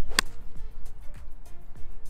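A golf club strikes a ball off the tee: one sharp crack about a fifth of a second in. Background music with a steady beat plays underneath.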